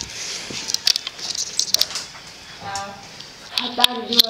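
Irregular sharp clicks and scuffs of footsteps on loose stone blocks. A short vocal sound comes about three seconds in, and a voice starts near the end.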